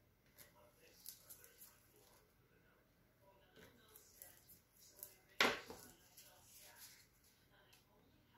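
Quiet handling noise while paint is being worked: scattered light clicks and taps, with one sharp knock about five and a half seconds in, like a cup or bottle set down on a hard surface.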